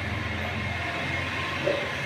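A wardrobe door being pulled open, with a soft knock near the end as it comes free, over a steady low hum.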